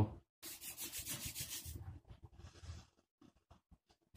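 Hands rubbing beard oil between the palms and into a beard: a scratchy rub lasting about a second and a half, then a shorter, fainter one.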